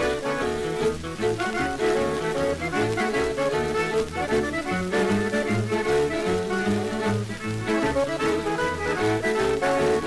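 Instrumental break of a mid-1940s boogie-woogie western song, a small band over a steady, driving bass beat, played from a 78 rpm shellac record.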